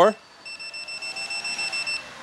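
Electric unicycle's power alarm beeping: a high electronic tone pulsing rapidly, about eight times a second, which warns that the rider is drawing too much power and nearing cutoff. It starts about half a second in and cuts off suddenly.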